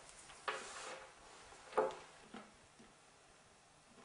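Faint sounds of a piece of dark chocolate being put in the mouth and bitten: a short sharp sound about half a second in, a louder one near two seconds in and a small click just after, otherwise a quiet room.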